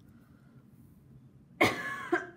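Faint room tone, then a woman coughs sharply about a second and a half in.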